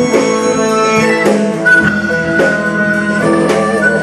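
Live blues-rock band: a harmonica played through the vocal microphone holds long notes over electric guitar, bass guitar and a steady drum beat.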